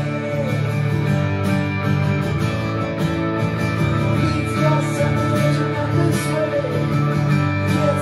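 Live band playing an instrumental passage on strummed acoustic guitars and an amplified electric guitar, steady and full.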